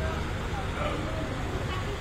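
Faint chatter of a gathered crowd over a steady low rumble.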